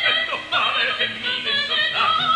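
Operatic singing with orchestral accompaniment, from a comic opera duet for soprano and baritone. The voice sings with a wide vibrato and moves quickly up and down in pitch.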